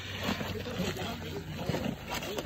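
Faint, irregular crinkling of aluminium foil and the soft sound of smoked pork being torn apart by gloved hands, over a steady background noise.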